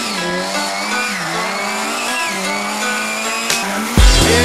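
Car engine revving, its pitch dipping and rising twice, with a high tyre squeal gliding above it; music plays faintly underneath.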